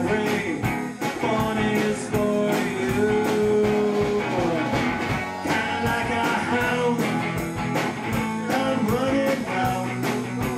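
Live band playing a song: electric guitar and drums keep a steady beat under a gliding melodic lead line.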